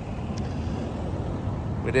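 Steady low rumble of outdoor background noise in a pause between words; a man's voice starts again near the end.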